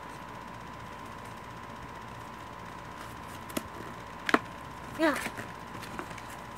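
A couple of sharp clicks from a toy's packaging being handled and opened, the louder one a little past four seconds in, over a faint steady hiss and a thin high whine.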